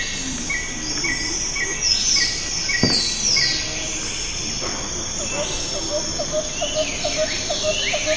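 Wild birds and insects calling together: a run of about six short repeated notes in the first few seconds, high falling whistles throughout, and from about five seconds in a quick, even series of low chirps, some four a second.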